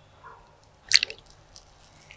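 A metal spoon scooping a piece of Nutella-covered sponge cake and carrying it into the mouth. There is one sharp click about a second in, the loudest sound, among smaller soft clicks.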